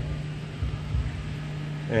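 Steady low background hum, with a few faint low knocks of handling.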